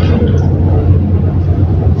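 A steady, loud low hum of room noise in a pause between words.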